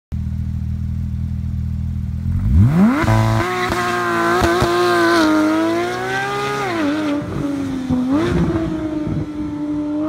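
Porsche 911 GT3's flat-six engine, breathing through an IPE exhaust, idles low, then revs up sharply about two and a half seconds in as the car pulls away. The engine holds a high pitch under hard acceleration, dipping briefly and climbing again around seven to eight seconds.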